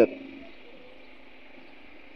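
The tail of a spoken word right at the start, then faint steady background hiss.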